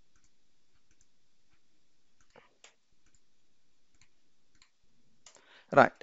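Faint computer mouse clicks, a handful scattered over a few seconds, against near-silent room tone.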